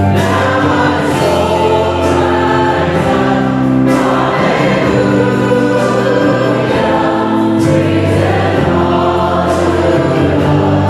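A church choir and worship vocalists singing a song together, with a band of piano, drums and guitars accompanying in held, sustained chords.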